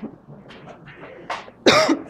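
A woman coughing: two coughs close together in the second half, the second one louder.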